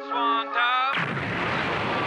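Hip hop track: a vocal line over a held low note, which cuts off suddenly about a second in to a loud, steady rush of noise, a produced sound effect in the beat.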